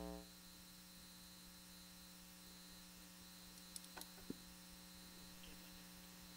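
Near silence: a faint steady hum on the audio line, with a few faint clicks about four seconds in.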